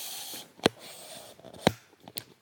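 Camera tripod being extended: a short sliding rustle, then two sharp clicks about a second apart as its locks snap into place.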